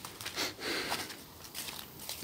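Faint breathing with soft rustling from a person walking along a leaf-littered forest path, two breath-like puffs about half a second and a second in.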